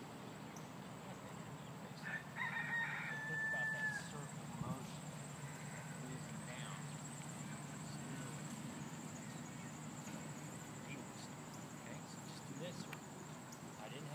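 A rooster crowing once, about two seconds in: a held, high call lasting about two seconds that drops at the end. A steady low background hum runs underneath.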